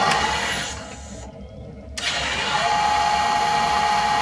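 Metal lathe running, then winding down and stopping about a second in. It starts up again sharply at about two seconds and runs with a steady whine. On this imperial lathe the half nuts cannot be disengaged while cutting a metric thread, so the spindle is stopped and restarted, in reverse, to run the threading tool back.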